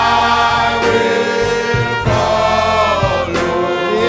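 Men's choir singing a gospel song, with long held notes that waver in vibrato.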